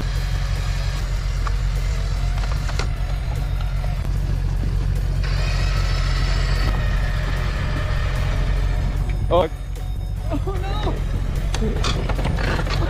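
Electric winch pulling a car under heavy load, with the pickup's diesel engine running steadily underneath. About nine and a half seconds in comes a heavy thud as the car tips over against the tree.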